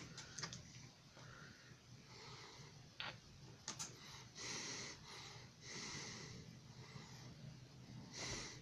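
A man drinking from a plastic juice bottle, heard faintly: a few soft clicks of swallowing, then two breaths of about a second each through the nose.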